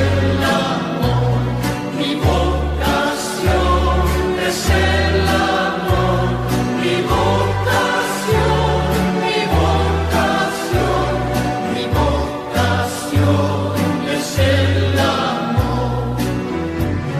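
Catholic worship song: a choir singing over an accompaniment of steady, regularly changing bass notes.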